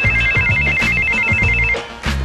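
Mobile phone ringtone: a fast warbling trill that flips rapidly between two high tones, then stops near the end as the phone is answered.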